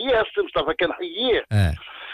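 Speech only: a man talking over a telephone line, with two short interjections in a second, fuller-sounding voice.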